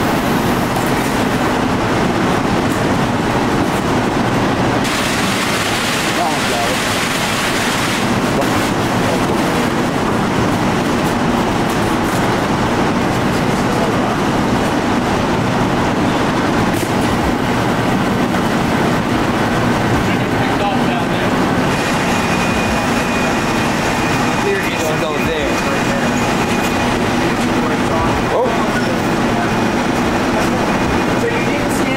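Powered roller conveyors and sortation machinery running in a parcel warehouse: a steady, dense mechanical noise of rollers and moving parcels.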